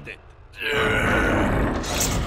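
A cartoon character's long, strained grunt of effort, starting about half a second in, over dense animation sound effects.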